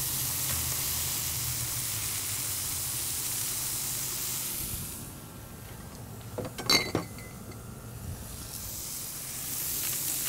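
Eggs and beef burger patties frying in bacon grease on a hot flat-top griddle, with a steady sizzle. The sizzle eases a little past the middle and then builds again, and a couple of short, sharp knocks come about two-thirds of the way through.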